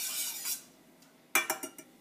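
Wooden spatula scraping as it stirs a thin sauce in a stainless steel frying pan, stopping about half a second in; near the end, four or five quick knocks and clicks of utensil against the pan.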